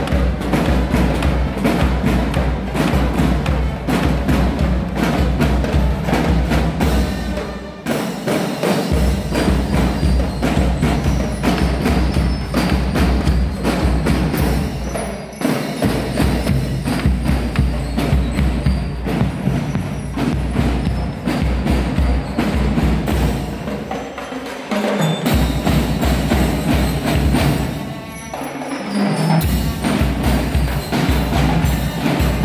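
Marching drum band playing a cadence on snare drums and bass drums. The sticks click sharply and quickly over a steady low beat, with several short breaks where the recording cuts.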